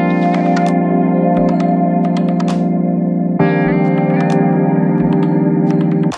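Background music: sustained electric guitar chords with echo effects, changing chord about three and a half seconds in.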